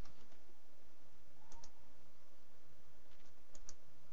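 A few faint, sharp clicks over quiet, steady background noise: one about one and a half seconds in and a quick pair near three and a half seconds.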